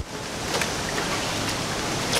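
A steady, even hiss with no clear pitch, dipping briefly at the very start.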